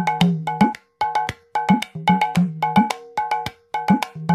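Bell-like struck percussion playing a quick rhythmic pattern, about four strikes a second with brief breaks, as the opening of a music track.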